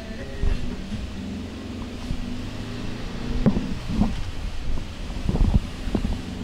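Vehicle engine running steadily while driving, with wind noise on the microphone; a few short, louder sounds come in around the middle and again near the end.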